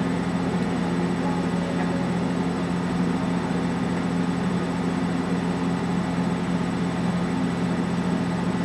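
Steady low hum under a constant hiss, unchanging in level: room or recording background noise.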